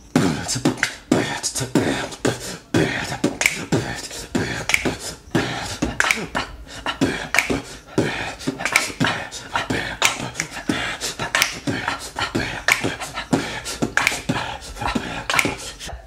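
A man beatboxing into a studio condenser microphone: a fast, dense stream of mouth-made kick, snare and click sounds that starts abruptly. It is a vocal percussion take recorded as the drum track for an all-acoustic remix.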